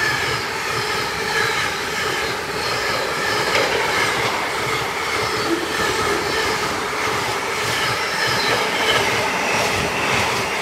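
Container freight train wagons rolling past close by: a steady rumble of wheels on rail, with repeated clicks as the wheelsets run over the rail joints.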